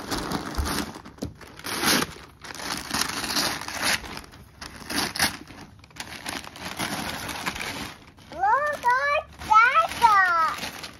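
Wrapping paper being torn and crumpled off a large gift box in repeated rustling, crackling bursts. Near the end, two high rising-and-falling vocal exclamations.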